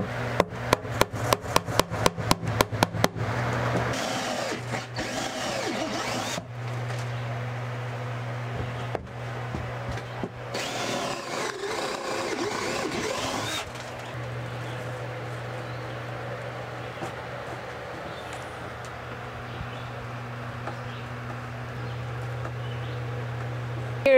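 A hammer taps cable staples over flexible wire into a wooden joist in a quick run of about five light taps a second for the first three seconds. Then a cordless drill bores through a wooden 2x4 stud for about ten seconds, the bit grinding through the wood, followed by a quieter stretch.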